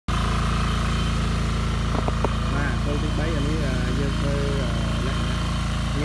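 Walk-behind two-wheel tractor engine running steadily while it drives a rotary soil-hilling attachment, with a few sharp knocks about two seconds in.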